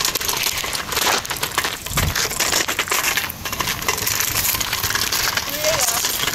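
Steady crunching and rustling from walking on a gravel path with a handheld phone, dense with small crackles.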